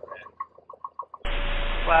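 Cockpit intercom opening about a second in: a steady hiss and hum cut in suddenly, carrying the running noise of the Piper Cherokee's engine through the headset microphone. Faint short blips come before it.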